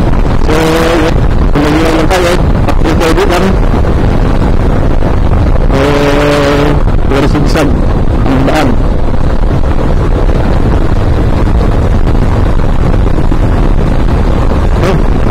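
Motorcycle riding at road speed, with heavy wind noise buffeting the microphone over the engine. A few short pitched sounds cut through, one held steady for about a second near the middle.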